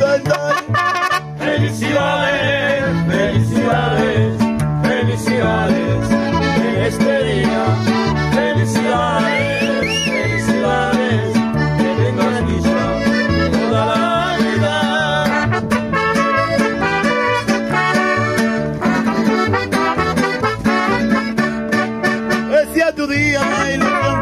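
Mariachi band playing an instrumental break: steady guitarrón bass notes and strummed vihuela chords under a melody line.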